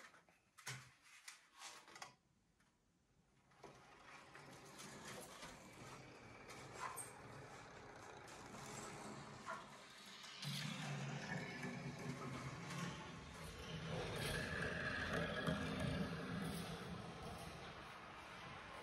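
Marbles rolling along a plastic rail marble track: a few light clicks at first, then a low rumble that builds and is louder from about halfway on, with scattered clicks.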